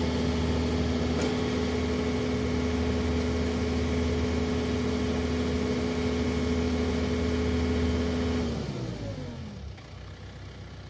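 John Deere 4052 compact tractor's diesel engine running steadily with the backhoe attached; about eight and a half seconds in its pitch falls away and it goes much quieter as it winds down.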